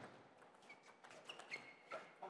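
Table tennis rally: a sharp click of the ball at the very start, then a run of lighter, irregular ball clicks off rackets and table, with a few short shoe squeaks on the court floor.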